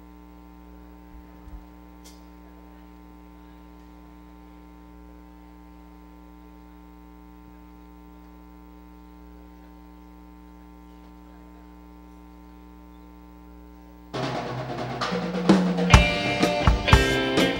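Steady electrical mains hum with a few faint clicks. About two seconds before the end, a rock band with symphony orchestra comes in loudly and suddenly, drums and electric guitar at the front.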